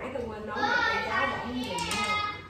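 Speech only: a high-pitched voice talking, with no other clear sound.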